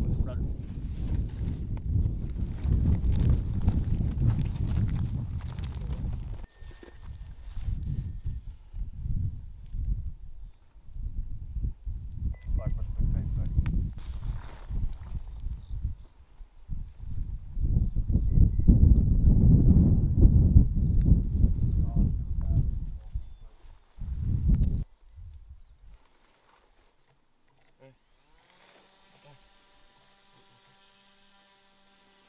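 Wind buffeting the microphone in irregular gusts, a low rumble that drops out now and then and dies away near the end.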